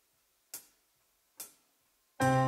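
Drumsticks clicked together in a slow, even count-in to the song: two short, sharp clicks a little under a second apart.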